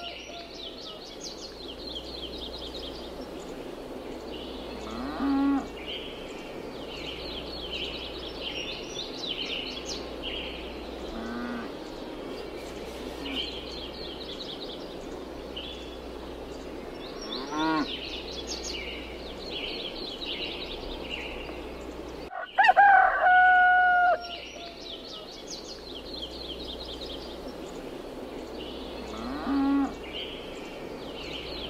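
Farmyard ambience: small birds chirping throughout, cattle mooing four times, and a rooster crowing loudly about 23 seconds in. The same stretch of recording repeats from the crow onward.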